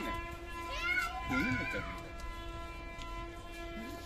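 A toddler's short wordless vocal sounds about a second in, over a steady drone held at one pitch throughout.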